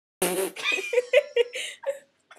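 A young woman laughing: a quick run of short laughs that stops at the end.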